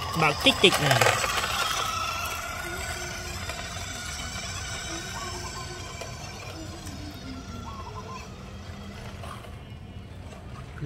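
Toy remote-control car's small electric motor whining with a faint, slowly falling pitch as it drives off across wet concrete, the sound growing fainter. A voice is briefly heard near the start.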